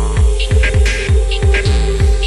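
Electronic dance music with a fast, steady kick drum, about four beats a second, each beat dropping in pitch, under a held tone and short, sharp high ticks.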